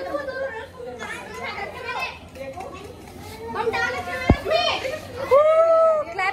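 A group of children shouting and chattering excitedly, with one sharp thump about four seconds in.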